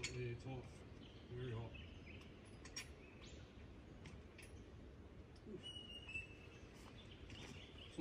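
A few faint clicks of a plug spanner working a chainsaw's spark plug loose, over quiet forest background with a bird calling briefly about halfway through.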